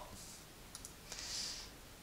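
Faint computer mouse clicks: a couple of quick, sharp clicks a little under a second in, as an option is picked from a drop-down menu, followed by a brief soft hiss.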